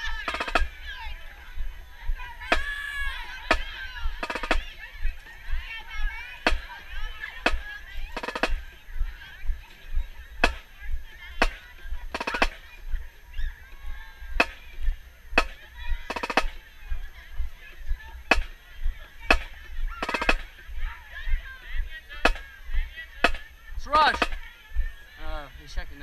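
Marching band percussion tapping a steady marching cadence: sharp clicks about once a second. Voices of a crowd are heard behind it.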